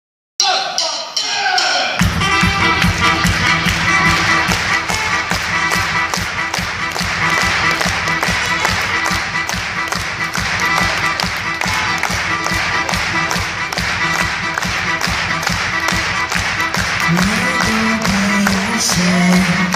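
Live unplugged band music: acoustic guitars over a steady fast percussive beat of about four strikes a second, with a singing voice coming in near the end.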